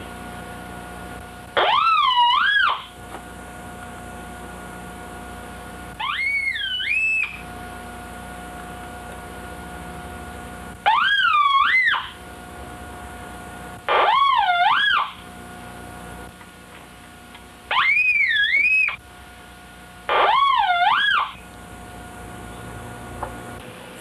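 A home-built Syncrometer's small loudspeaker sounding a tone six times, each time for about a second, as the probe is touched to the skin of the hand and the circuit closes. The pitch of each tone wavers, dipping and rising. A low steady hum sits underneath between the tones.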